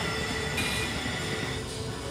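Video slot machine spinning its reels, the game's electronic spin tones held steady over a continuous din of casino noise, until the reels land near the end.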